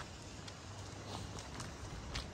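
Faint outdoor background with a low hum and a few light, irregular clicks or taps.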